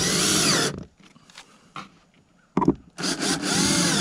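Cordless drill driving screws through a wooden jig into roof decking, in two short runs of about a second each. The motor's pitch rises and falls during the second run.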